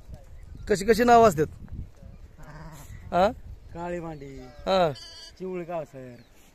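Sheep and goats in a resting flock bleating, several separate calls: a long quavering bleat about a second in is the loudest, followed by shorter bleats later on.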